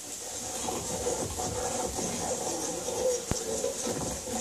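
Television sound of a police reality show's arrest scene, heard through the TV speakers in the room: indistinct scuffling commotion, with one sharp click about three seconds in.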